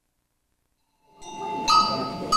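Dead silence, then about a second in the recording cuts in on hall noise, and a bright, bell-like metal note is struck and left ringing near the end.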